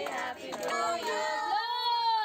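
A child singing: mixed voices, then a high child's voice holds one long note from about three-quarters of the way in.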